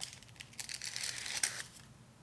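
A thin paper blotting sheet being pulled out of a plastic compact: a quiet, crisp crinkling made of many tiny crackles, starting with a click and stopping near the end.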